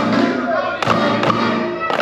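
Group of drumsticks striking rubber practice pads together in rhythm, with sharp accented hits near the start, just under a second in, and near the end, over recorded music with a melody and voice.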